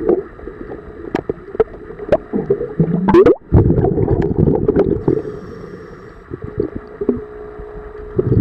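Underwater gurgling of a scuba diver's exhaled bubbles from the regulator, heard through an underwater camera housing, with a louder burst of bubbling about three and a half seconds in and scattered sharp clicks throughout.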